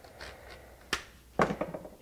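Quiet room tone with a single short click about halfway through, then a brief breath-like sound shortly before speech resumes.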